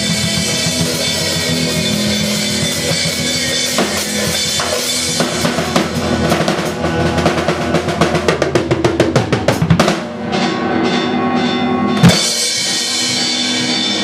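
Rock band jamming live on drum kit and electric guitars. The guitars hold ringing chords while the drums build into a fast run of hits, break off briefly, and land one loud closing hit about twelve seconds in, after which the chord rings on.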